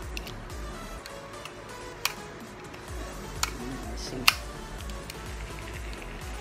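Background music, with three sharp clicks from a small spinning fishing reel being handled, the loudest about four seconds in.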